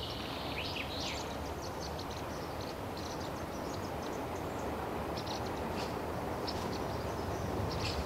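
Outdoor background ambience: a steady hiss with faint, short high chirps of small birds scattered through it.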